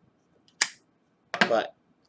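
A single sharp click from the lighter and pipe being handled while a tobacco pipe is lit, then, about a second later, a brief voiced sound from the smoker.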